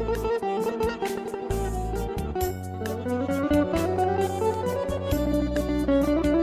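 Live instrumental Azerbaijani folk music: a garmon (button accordion) carries the melody over keyboard bass, plucked strings and regular frame-drum strokes.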